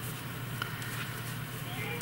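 Faint sounds of hand knitting, needles and yarn being worked stitch by stitch, with a few soft ticks, over a steady low hum.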